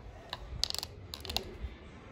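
Plastic buttons of a handheld ceiling-fan remote clicking: one click, then two quick bunches of several clicks about half a second apart, as the fan is set to high speed. A low rumble from the running ceiling fan sits underneath.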